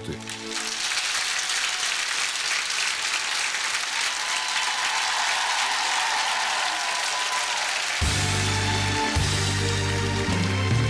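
Studio audience applauding. About eight seconds in, music with a heavy bass line starts up under the applause as a song begins.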